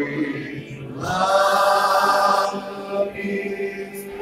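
Congregational worship: many voices chanting and singing together over a steady held tone. A loud sustained vocal note stands out from about one to two and a half seconds in.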